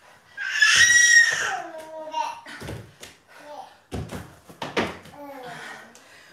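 A loud, strained vocal cry of effort near the start, followed by shorter breathy exertion sounds, from people doing a fast dumbbell man-maker circuit. Several sharp thuds of dumbbells and feet hitting the floor mats come in the second half.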